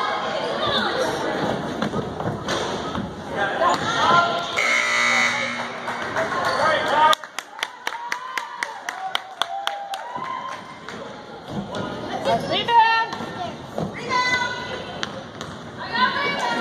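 Gymnasium scoreboard horn sounding once for about a second, partway through, over spectators' chatter and shouts in the gym. A rapid run of clicks follows soon after.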